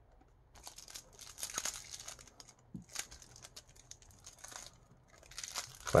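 Plastic shrink wrap being torn open and peeled off a deck of tarot cards, crinkling and crackling in uneven spells with a short pause about halfway through.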